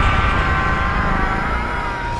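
Film explosion sound design: the deep rumble of a large blast in slow motion, with several high, steady ringing tones held over it.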